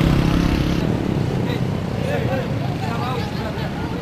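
A motor vehicle's engine running with a steady low hum that stops about a second in, then people's voices talking.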